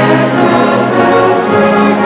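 Congregation singing a hymn together in slow held notes, with instrumental accompaniment.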